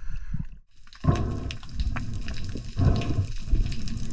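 Sea water washing around a camera at the surface, a short lull, then from about a second in a muffled underwater rushing with bubbles and ticks as the diver ducks under.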